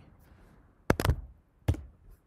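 Computer mouse clicking: a quick run of sharp clicks about a second in, then one more near the end.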